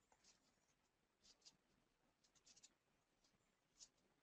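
Near silence: room tone with a few very faint, short ticks scattered through it.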